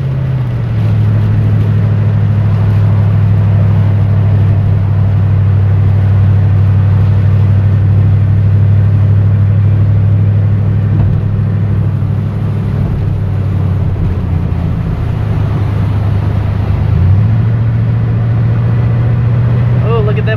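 Truck driving through heavy rain on a flooded road, heard from inside the cab: a loud, steady low drone of engine and tyres over a constant wash of rain and water spray. The drone drops in pitch about half a second in and rises again about three seconds before the end.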